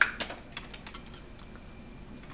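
A few light clicks and taps from handling earbuds and their cable, the sharpest right at the start and thinning out within the first second, then a low steady hiss.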